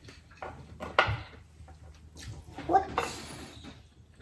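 Eating sounds at a table: short clicks and smacks of mouths and hands working on crawfish and king crab, with a short rising voiced sound a little before three seconds in.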